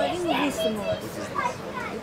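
Only speech: quiet, overlapping conversational voices, with no other distinct sound.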